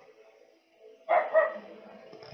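Two short dog barks in quick succession about a second in, after a near-quiet first second.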